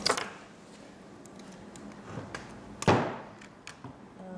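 Light clicks and ticks from handling a Bolex 16 mm cine camera, then one sharp knock about three seconds in as the metal camera meets the wooden table.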